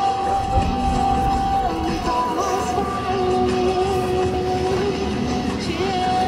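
Background music: long held melody notes that waver and step in pitch over a steady accompaniment.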